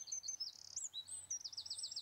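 Small birds chirping faintly with high, thin calls, ending in a quick run of repeated rising-and-falling notes.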